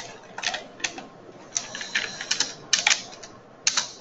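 Computer keyboard keystrokes: about a dozen sharp clicks in short irregular runs with pauses between them.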